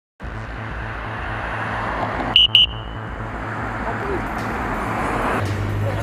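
Roadside traffic noise with a steady low hum, broken about two and a half seconds in by two short, high electronic beeps.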